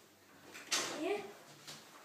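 A child's voice faintly calling back "yeah" from another room, short and distant, in an otherwise quiet kitchen.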